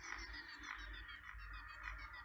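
Faint animal calls: a croak-like call repeating evenly, about every 0.6 seconds, four times, over a busy layer of small high chirps.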